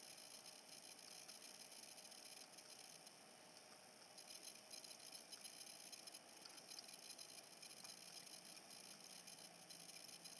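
Near silence: faint background hiss, with no clear sound events.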